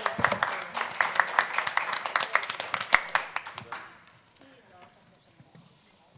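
Applause from a small group of people clapping, dying away about four seconds in.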